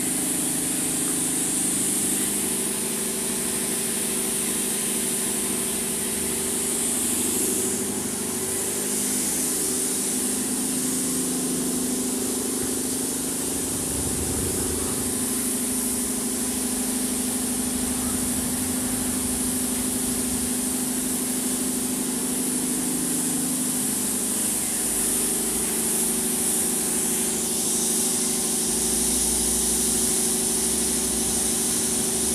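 Paint spray gun hissing as air and paint are sprayed, over the steady hum of a running air compressor. The hiss is strongest in the first several seconds and changes again near the end.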